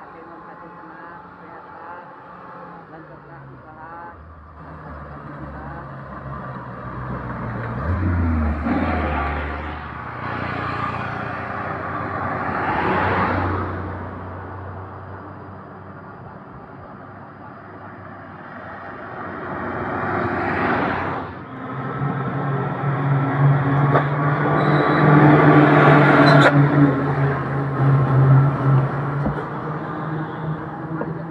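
Trucks and cars passing on a hill road, their engines and tyres swelling and fading, with passes peaking about halfway and again about two-thirds of the way through. A truck's diesel engine then runs close by with a strong, steady low drone, loudest about three-quarters of the way in.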